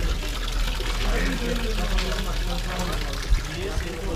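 Water pouring steadily from an old marble street fountain into its stone basin. It leaks out of the marble itself rather than the spout, with faint voices in the background.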